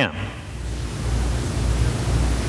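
Steady hiss with a low hum underneath, without speech: background noise of the room and its sound system.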